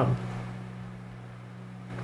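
Room tone in a pause between speech: a steady low hum, with the last spoken word trailing off right at the start.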